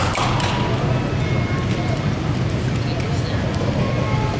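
Indistinct chatter of people talking in a large hall, over a steady low hum, with a few faint knocks near the start.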